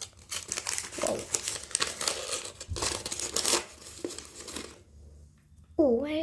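Plastic wrapper of a mini collectible packet being crinkled and torn open by hand, in crackly bursts for about four and a half seconds before it stops.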